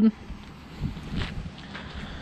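Wind rushing over the microphone outdoors, with a few faint footsteps on asphalt.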